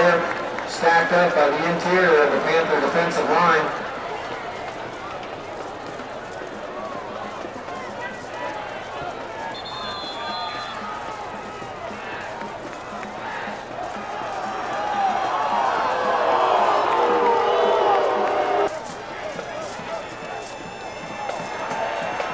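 Football stadium crowd noise: voices up close for the first few seconds, then a steady crowd din that swells into a louder stretch of many voices and cuts off suddenly near the end.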